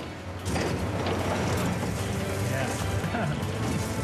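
A hydraulic excavator works a TRX450 concrete pulverizer attachment, its steel jaws crunching and grinding chunks of concrete over the steady low drone of the excavator's engine.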